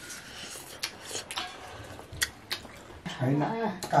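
A few short, sharp clicks and taps of a family eating by hand from steel plates, at irregular moments, then a voice a little after three seconds in.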